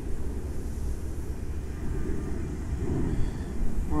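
Strong wind buffeting the microphone: a gusty low rumble that rises and falls, with no tone in it.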